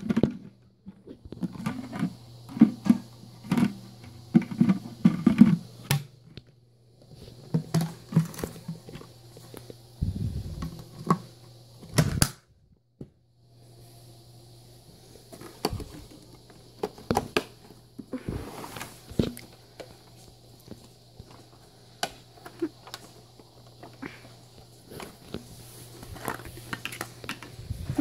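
Plastic clicks, knocks and rattles of a Dyson DC25 vacuum's detached parts (cyclone, clear dust bin, filters) being handled and set down, with the machine switched off. The handling pauses briefly a little before halfway, and a faint steady low hum runs underneath.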